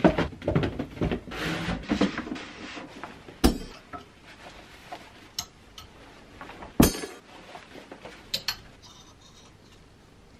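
Clothes hangers being handled: rustling and clattering while reaching into a cardboard box, then a few sharp clacks as hangers are hooked onto the clothes rail, the loudest about three and a half and seven seconds in.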